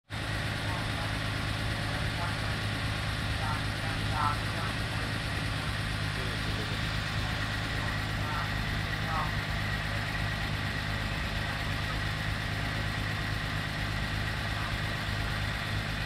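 Leyland Reiver lorry's diesel engine idling steadily, with faint voices in the background.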